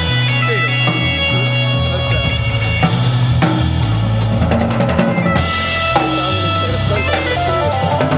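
Live jazz band playing: a drum kit with bass drum, snare and cymbal strokes, over a low bass line that moves in held, stepping notes and sustained higher notes above it.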